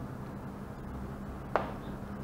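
Low steady hum of a quiet room, with one short sharp click about one and a half seconds in as the small plastic reagent bottle and its measuring spoon are put down.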